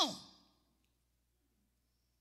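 A woman's amplified voice ends a word with a falling pitch and fades out within the first half second, followed by near silence.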